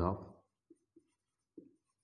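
Marker writing on a whiteboard: three short, faint strokes spaced out over the second and a half after a spoken word.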